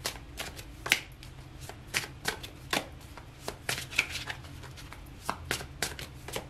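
A deck of tarot cards being shuffled by hand, packets of cards slapping and clicking against the deck in an irregular string of soft snaps, a few each second.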